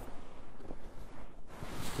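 Wind buffeting the microphone: an uneven rushing noise with no pitch to it, growing hissier near the end.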